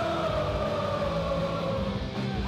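Live hardcore punk band playing loud through the PA, with one long held note that falls slightly in pitch.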